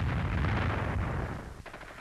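Battle sound of dense gunfire and shell bursts, a continuous rumble that dies away about a second and a half in.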